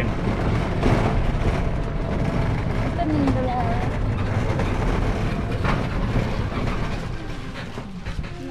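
A steady, loud, noisy din with a heavy low rumble, with a few scattered voices calling out in it.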